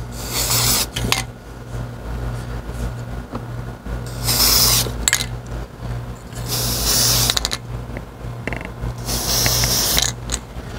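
Aerosol can of matte sand-coloured spray paint giving four short hissing bursts, each about a second long, over a steady low hum. This is camouflage paint being dusted on through a template.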